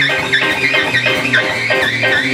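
Live blues band with a tenor saxophone soloing in quick runs that bend and waver in pitch, over a repeating electric bass line, drums and guitar.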